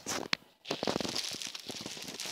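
Clear plastic poly bag crinkling as a hand handles it: a brief click, then a continuous crackly rustle from about half a second in.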